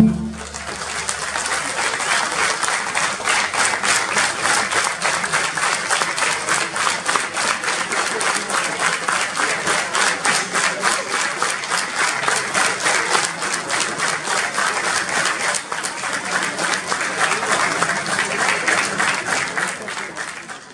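Audience applauding in a hall, the claps falling into a steady regular beat.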